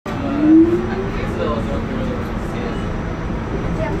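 Underground train running, a steady loud rumble heard from inside the carriage, with voices over it. A voice rises in pitch about half a second in, the loudest moment.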